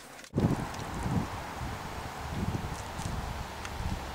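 Wind on the microphone outdoors: a steady rushing with uneven low rumbles, starting abruptly about a third of a second in.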